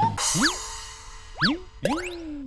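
Cartoon boing-like sound effects: three quick swoops, each rising and then falling in pitch, about a second apart, over a faint held note in a pause of the drum-led music.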